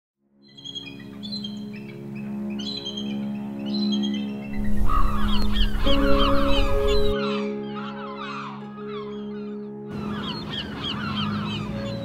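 Music of held chords with a flock of birds calling over it, many short calls overlapping. A rush of low noise comes in for a few seconds in the middle.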